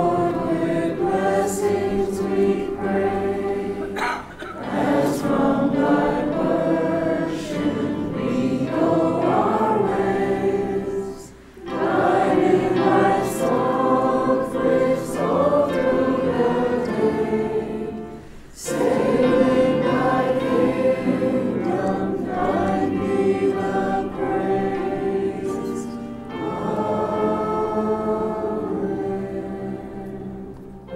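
A choir singing in long held phrases, with brief pauses about four, eleven and eighteen seconds in.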